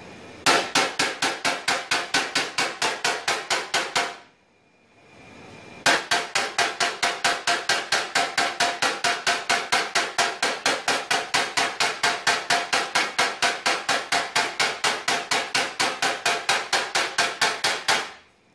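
Tap-down hammer with a knockdown tip striking a car fender's sheet metal in rapid, even light taps, about five a second, with a break of about a second and a half about four seconds in. This is paintless dent repair blending: the raised edges around the dent are being tapped down to smooth them and relieve the tension in the metal.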